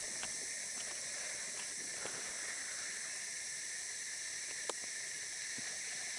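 Steady, high-pitched insect chorus of a tropical forest, a constant shrill hiss, with a single faint click about four and a half seconds in.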